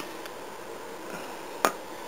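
A single sharp click about one and a half seconds in, as worn brake pads are handled, over a steady background hiss.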